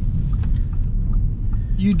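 Steady low road and engine rumble inside the cabin of a 2019 Audi A5 Sportback Quattro cruising at speed, with its two-litre engine running smoothly.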